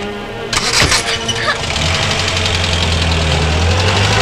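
A Hindustan Ambassador car: the door shuts with a thump about half a second in, then the engine starts and runs steadily as the car pulls away.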